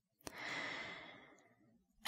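A soft breath between sentences, with a small mouth click just before it; the breath swells and fades within about a second.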